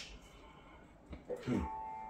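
A quiet pause in the playing: faint hiss from a Yamaha THR10 guitar amp being set to its crunch channel, with a few faint brief sounds about a second and a half in and a faint held guitar tone near the end.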